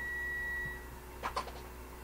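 Faint audio feedback whistle, one steady high tone from headphones leaking into the radio's microphone, which cuts off about a second in. A short faint burst of sound follows.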